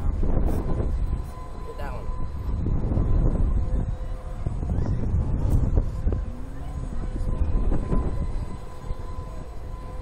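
Wind rushing and buffeting over the microphone of a SlingShot bungee ride capsule as it swings and bounces. The rumble swells and fades every two to three seconds with the swings.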